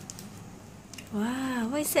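Faint crinkling of a small clear plastic bag being handled in the first second. Then a woman's drawn-out, rising-and-falling vocal sound leads into the spoken word "What".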